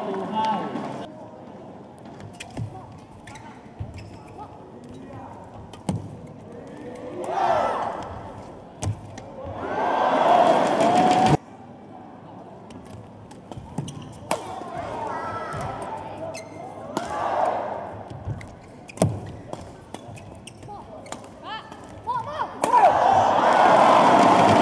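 Badminton rally: sharp racket strikes on a shuttlecock at irregular intervals, heard in a large hall. Bursts of voices from players or spectators come between the strikes, one cutting off abruptly about eleven seconds in and another rising near the end.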